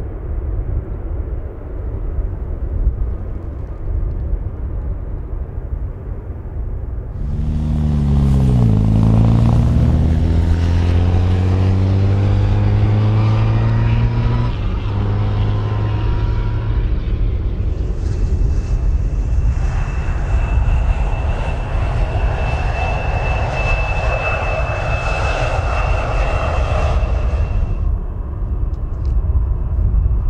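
Jet airliner taxiing, under a steady low rumble. About seven seconds in, an engine sound swells with several tones climbing slowly in pitch. From about eighteen seconds a jet whine with a steady high tone rides over it for ten seconds, then cuts off.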